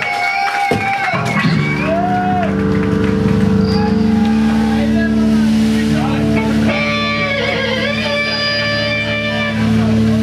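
A steady electric guitar drone through the amplifier, a held chord that starts about a second in and keeps ringing without strumming, with voices shouting and talking over it.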